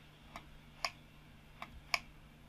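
Computer mouse button clicking: four short, sharp clicks, unevenly spaced, while edges of a 3D solid are picked for a fillet, over a faint steady hum.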